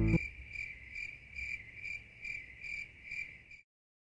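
Cricket chirping: a regular run of short, high chirps, about two or three a second, that stops shortly before the end.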